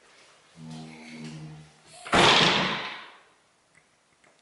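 A man's drawn-out, low voiced yawn-groan in two parts, followed by a loud rushing exhale that fades out within about a second: the sounds of a tired person.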